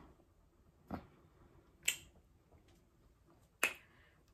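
Three single finger snaps, the first about a second in, the second a second later and the third near the end, each short and sharp with near quiet between them.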